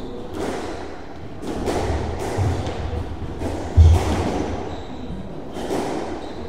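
Squash rally in a court: a run of sharp knocks from the ball striking rackets and the court walls, each ringing briefly in the hall. A heavy thud a little before the two-thirds mark is the loudest.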